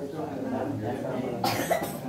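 A person coughing, two quick coughs about one and a half seconds in, over low murmured conversation in the room.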